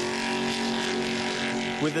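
Jet sprint boat's 700-horsepower engine held at steady high revs, with a rushing noise beneath it.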